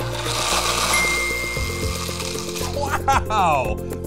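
Comic machine sound effects over background music: a whirring, whooshing noise with a brief steady high beep about a second in. Near the end come quick sliding, warbling tones.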